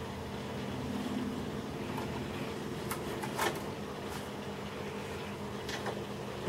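A steady low mechanical hum with several fixed pitches, with a few faint clicks around the middle.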